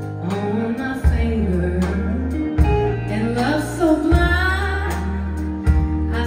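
Live country band playing with a woman singing lead, over low bass notes that change about every second and a half.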